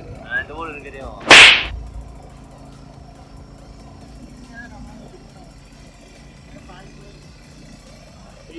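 A short, sharp whooshing burst about a second and a half in, the loudest sound here. After it comes a faint, steady hum from the Suzuki Gixxer SF 250's single-cylinder engine running as the motorcycle climbs.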